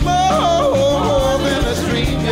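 Soul-rock band playing live, with a sung vocal line that slides and wavers in pitch and holds a long note, over electric guitar, bass and drums.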